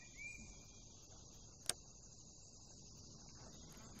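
Near silence, with a faint steady high-pitched chirring throughout and a single sharp click about one and a half seconds in.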